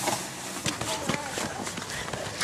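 Footsteps in snow, a few a second, as people walk through it, with faint voices in the background.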